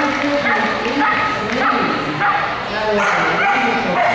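Dogs barking and yipping, with people's voices going on throughout.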